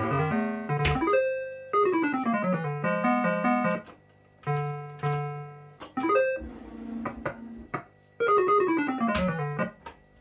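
Electronic sound effects of a 1987 JPM Hot Pot Deluxe MPS2 fruit machine: quick runs of beeping notes that fall and rise in pitch, with a few sharp clicks and short pauses between them.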